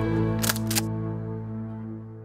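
A held low music chord slowly fading out, with two sharp mechanical clicks about half a second in, a quarter-second apart: a pump-action shotgun being racked.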